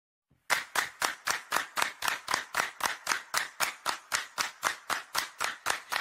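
Steady rhythm of hand claps, about four a second, starting half a second in: the clapped intro of a recorded song.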